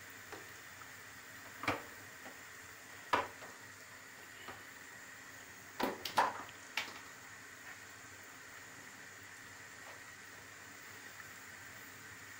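Thin dry yufka pastry sheets crackling and rustling in short, sharp bursts as they are folded by hand on a wooden board, over a steady faint hiss from a gözleme cooking on the griddle.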